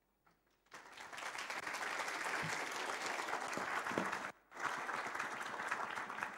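Audience applauding, starting about a second in, with many hands clapping together; the applause cuts out briefly about two thirds of the way through and then resumes.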